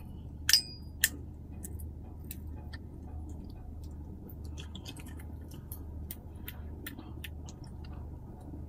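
Light, irregular clicks and ticks from a Shimano Sahara C5000XG spinning reel being handled and its handle turned, with two sharper clicks about half a second and a second in. A steady low hum runs underneath.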